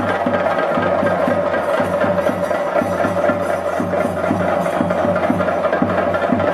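Ensemble of chenda drums played with sticks in a fast, dense, steady rhythm, accompanying a Theyyam performance.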